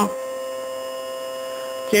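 A steady, even hum made of a few held tones, with no change in pitch or level through the pause.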